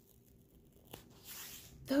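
A single click about a second in, then a soft crinkling rustle of the plastic film covering a diamond painting canvas as the canvas is handled.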